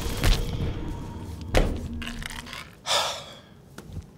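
A man coughing: two short harsh coughs, then a breathy gasp about three seconds in, over background music that fades away.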